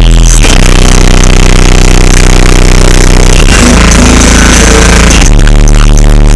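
Bass-heavy music played very loud through a Sundown and B2 Audio car audio system, heard from outside the vehicle. The sustained bass notes change pitch every few seconds, loud enough to flex the roof.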